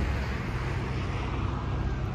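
Steady low rumble of motor vehicle engines and road traffic.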